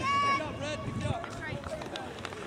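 People shouting and calling out across a rugby pitch, opening with a brief high-pitched shout, then shorter calls.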